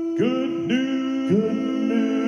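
Male a cappella quartet singing held notes, the voices coming in one after another and stacking into a sustained close-harmony chord.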